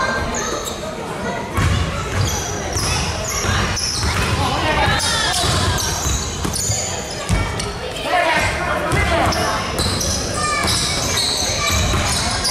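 A basketball bouncing on an indoor court over and over, with short high squeaks and indistinct voices echoing in a large hall.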